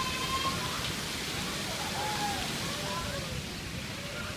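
Steady rushing wash of pool water, with faint distant voices over it.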